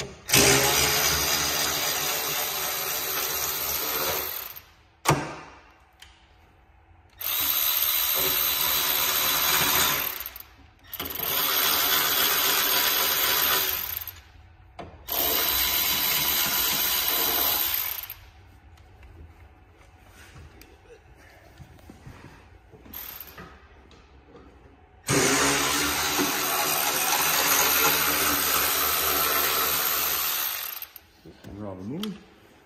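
Compact cordless power driver running in five spells of about three to four seconds each, with a steady whine, backing out the T25 bolts that hold a snowmobile's rear bumper. A single sharp click comes at about five seconds, and there is quieter handling between the runs.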